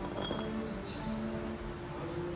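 Background music with steady sustained notes. About a quarter of a second in comes a brief clink of a plastic lamp socket knocking against the neck of a glass globe.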